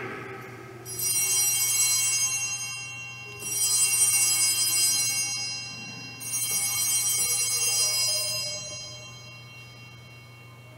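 Altar bells rung three times at the elevation of the chalice, marking the consecration of the wine. Each ring is a bright cluster of high tones that fades away over about two seconds, the first about a second in, the others near 3.5 and 6 seconds, dying out near the end.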